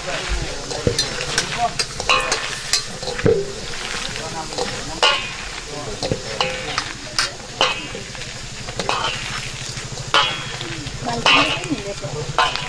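Hands squeezing and tossing sliced mushrooms in a large stainless-steel bowl: wet squelching and rustling, with irregular clicks as the bangles on the wrists knock the metal.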